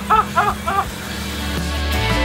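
A man laughing in about four quick 'ha' bursts during the first second. Music with a steady bass line then fades in and grows louder.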